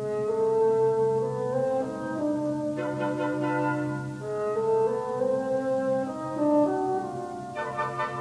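Late-Romantic orchestral music: a slow melody in long held notes moves step by step over a sustained low note.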